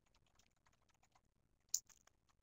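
Faint typing on a computer keyboard: a quick run of soft key clicks, with one louder click near the end.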